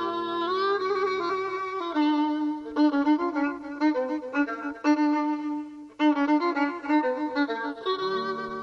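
Violin playing a Persian classical melody in dastgah Mahur: a held, sliding note, then a run of quick, ornamented notes from about two seconds in.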